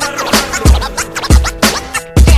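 Hip hop beat in an instrumental break: turntable scratching over drum hits, with the bass line dropped out.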